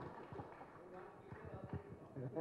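Soft, irregular low thumps of a handheld microphone being handled and carried as the holder steps away from a podium, with faint voices underneath.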